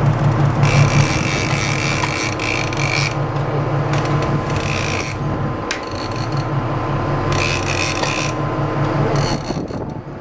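Fishing reel whirring in four bursts, the first about two and a half seconds long and the rest shorter, as line runs on the reel while a sailfish is fought. Underneath is a steady low drone.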